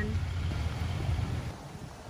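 Low outdoor background rumble, without clear tones, that fades about a second and a half in.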